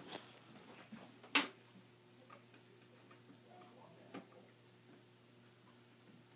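Faint scattered ticks and clicks of the filming device being handled and swung around, with one sharp knock about a second and a half in and a smaller one near four seconds, over a low steady hum.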